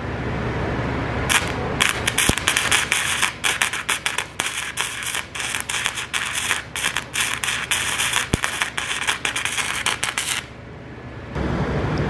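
Flux-core wire welder (Harbor Freight Titanium Easy Flux 125) arc crackling and popping irregularly for about nine seconds, starting about a second in and stopping shortly before the end. The bead is run with too much wire stick-out, three-quarters of an inch to an inch, and an unsteady hand, which gives a spattery weld.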